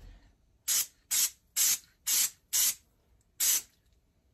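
Aerosol air filter cleaner sprayed from a can onto a dirt bike air filter in six short bursts, the first five about half a second apart and the last after a slightly longer gap.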